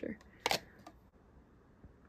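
A sharp plastic click about half a second in, then a fainter one, as clear plastic deli cups are handled.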